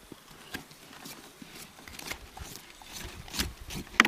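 Knife and gloved hands cleaning a fish on a board: irregular short cutting, scraping and knocking sounds as it is gutted, with one sharp knock, the loudest, at the very end.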